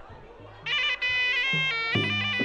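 Traditional Khmer boxing music starting up about two-thirds of a second in: a shrill, reedy sralai oboe melody over low drum notes, played as round three gets under way.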